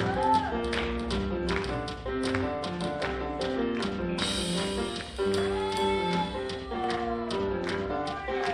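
Church worship band playing an instrumental passage between verses of a gospel hymn: keyboard and electric guitar chords over a steady beat of sharp percussion hits, with a bright hissing cymbal-like swell about four seconds in.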